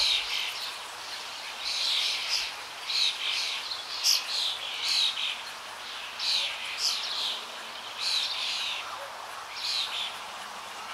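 Birds chirping: many short, high calls, some sliding down in pitch, repeating about once or twice a second.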